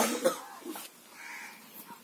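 A single short cough at the very start, then only faint, scattered low-level sounds.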